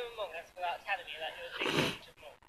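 Speech: voices talking, louder near the end.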